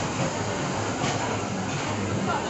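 Steady restaurant background noise: a low, constant hum under an even hiss, with no clear voices.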